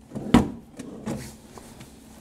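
A wooden drawer pulled open and pushed shut: a short slide ending in a sharp knock near the start, then a softer bump about a second in.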